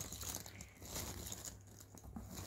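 Small cardboard jigsaw puzzle pieces rustling and clicking lightly and irregularly as fingers stir through a loose pile of them.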